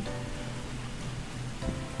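Steady rain hiss under quiet background music.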